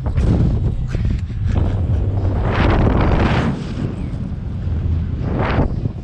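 Wind buffeting the microphone of the onboard camera on a Slingshot bungee ride, a steady low rumble with rushes of air that rise and fall several times as the capsule bounces and swings on its cords.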